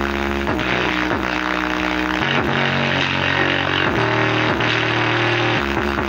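Electronic music with deep, sustained bass notes played loud through a bare 5-inch woofer driven at maximum power and excursion. The bass note shifts about every second and a half, with short pitch slides between notes.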